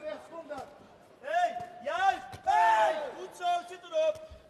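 Excited men's cries of 'oh!', several rising-and-falling shouts in quick succession, with crowd cheering swelling in the middle, reacting to a flurry of punches in a heavyweight kickboxing fight.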